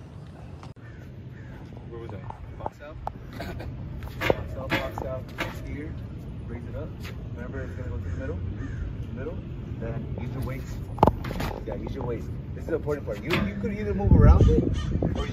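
Indistinct voices at conversational distance, broken by a few sharp knocks, the loudest about eleven seconds in.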